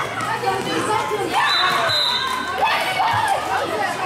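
Children's voices shouting and calling across a sports hall, several at once, loudest between one and three seconds in. A ball thuds on the hall floor about three seconds in.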